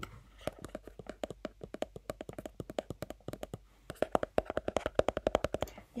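A rapid run of small, sharp clicks or taps made close to the microphone, about five or six a second, speeding up to about ten a second in the last couple of seconds before stopping.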